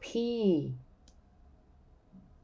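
A woman says the letter "P" once, her pitch falling. About a second in comes a single faint, sharp click.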